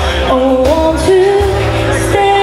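A woman singing live into a microphone with a band, electric guitar among it, accompanying her. Her melody moves in held notes that slide from one pitch to the next over steady low notes.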